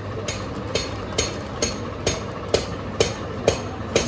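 A sharp knock or clap repeated evenly about twice a second, nine strikes in all, over a steady low background hum.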